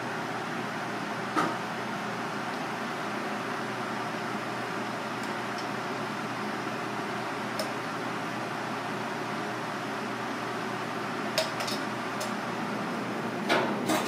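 Steady hum of kitchen ventilation, with a few light clinks and taps of utensils and dishes on the counter, most of them bunched together near the end.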